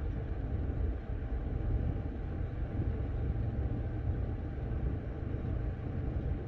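Steady low rumble inside a parked car's cabin, with no clear rhythm or pitch.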